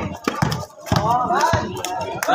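Irregular sharp knocks from a basketball game being played on a concrete street court, with spectators' voices and shouts in between.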